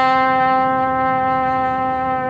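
Trumpet holding one long, steady note at an unchanging pitch.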